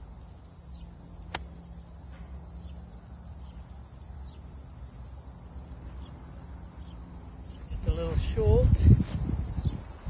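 A single sharp click as a golf club strikes the ball about a second in, over a steady, high-pitched chorus of insects. A voice calls out briefly near the end.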